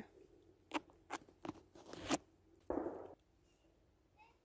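Dry twigs and bark crackling and snapping in a handful of sharp cracks as someone climbs about in a tree, followed by a short puff of noise just before the end.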